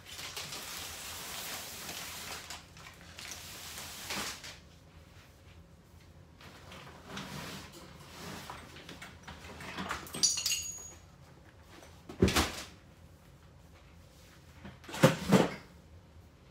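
Rummaging through a backpack and handling cleaning supplies: a long rustle at first, then scattered small knocks and rustles, with two sharp clatters of hard objects about twelve and fifteen seconds in.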